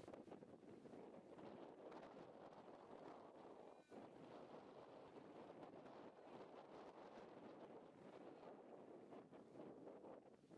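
Faint, steady wind noise on the camera microphone, an even rushing haze.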